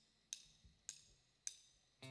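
A drummer's count-in for a live rock band: three sharp, evenly spaced ticks a little over half a second apart, setting the tempo just before the band comes in.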